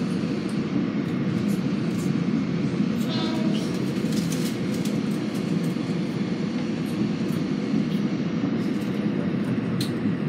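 Steady rumble of a Metro-North M7A electric multiple-unit railcar under way, heard from inside the car, with light clicks from the running gear over the rails.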